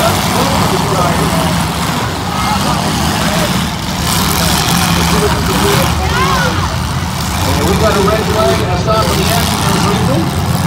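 Engines of several full-size demolition derby cars running and revving at once, a steady loud drone with pitch rising and falling, mixed with voices.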